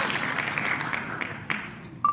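Applause sound effect from the wheel-of-names winner screen, fading away toward the end. A single mouse click sounds about one and a half seconds in.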